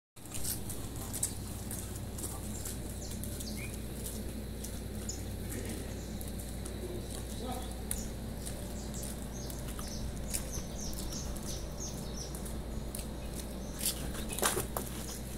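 Outdoor farmyard ambience: a steady low hum with many short, high bird chirps scattered throughout.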